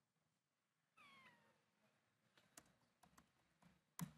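Near silence, with a brief faint falling squeak about a second in, then a few faint laptop keyboard clicks, the sharpest at the very end.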